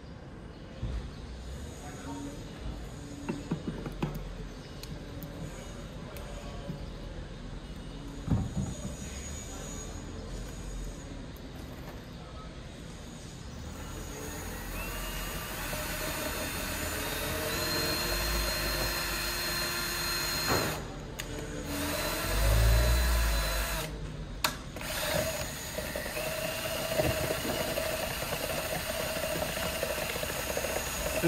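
For about the first half, quieter handling sounds with a few clicks as resin is poured from a plastic canister into a plastic measuring jug. Then a cordless drill fitted with a paddle mixer runs, stirring two-component silicate resin in the jug to mix it until it is homogeneous.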